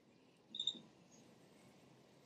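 A single short, high chirp about half a second in, from a small bird, over faint outdoor background.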